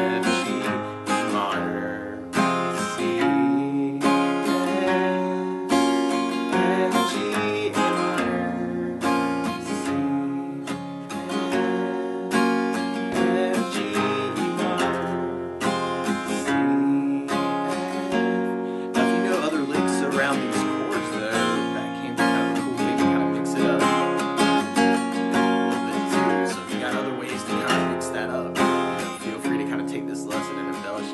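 Steel-string acoustic guitar, capoed at the first fret, strummed in a steady rhythm through a chord progression of F, G, A minor, C and E minor shapes, each chord opened by a picked bass note followed by down-up strums.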